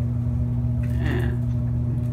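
Steady low machine hum at a constant pitch, like a running motor in a small room, with a brief faint higher sound about a second in.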